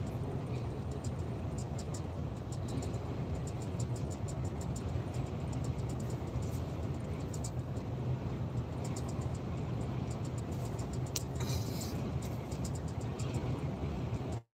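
Steady low engine and road drone heard from inside a truck cab cruising at motorway speed, with faint scattered clicks over it.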